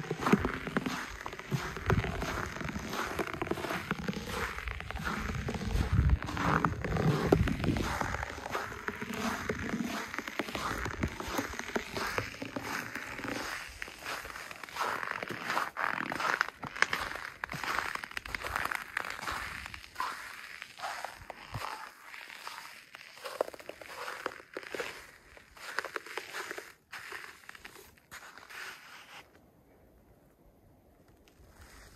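Footsteps crunching in frozen, frosty snow: an irregular run of steps that grows sparser and fainter toward the end, with wind rumbling on the microphone in the first several seconds.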